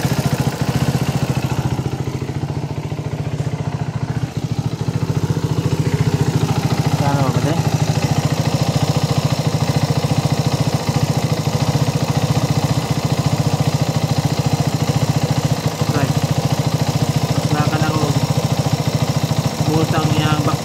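Suzuki Raider 150's single-cylinder four-stroke engine idling with a steady, even beat, on a bike that has an idling problem.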